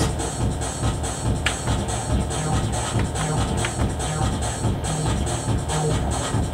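Roland MC-303 Groovebox playing a preset electronic drum pattern in a techno/house style: a steady, even beat with a strong low end and sharp higher hits. The pattern is being switched to number six.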